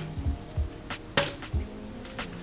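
Background music with a low, regular beat and steady held tones, with one sharp click a little past halfway.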